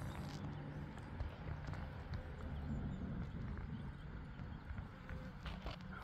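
Low, wavering buzz of insect wings at a hive entrance, from Asian honeybees clustered on the landing board and a yellow-legged hornet hunting them, with a few faint ticks.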